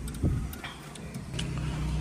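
Low steady hum of the car, with a few light clicks and a soft knock from the plastic dashboard trim and head-unit panel being handled.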